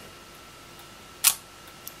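Leaf shutter of a 1948 Komsomolets twin-lens reflex camera firing with one sharp click a little over a second in, then a faint tick just before the end.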